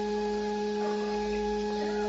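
Background music: a steady sustained drone held on one pitch with its overtones.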